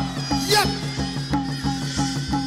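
Traditional Burmese Lethwei ring music: drums keeping an even beat of about four strokes a second under a steady pitched drone, with a short high wailing note about half a second in.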